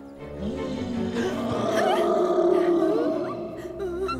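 A big brown bear roaring: one long roar that swells and then fades over about three seconds.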